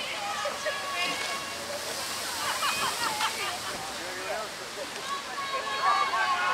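Faint, distant voices calling over a steady wash of river water.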